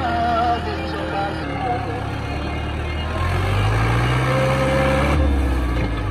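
New Holland Dabung 85 tractor's diesel engine working under load while pushing sand with a front blade; its pitch climbs steadily from about three seconds in and drops back just after five seconds. Music with a singing voice plays along with it.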